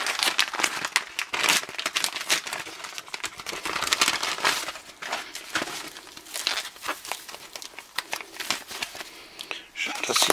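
Clear plastic packaging crinkling as hands handle and unwrap it, in a run of irregular crackles.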